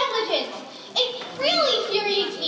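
Only speech: young performers speaking dialogue, with a brief pause a little before the middle.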